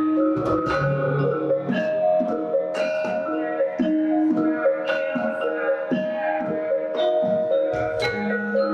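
Javanese gamelan ensemble playing: bronze kettle gongs and metal-keyed instruments struck in a steady stream of notes, each note ringing on.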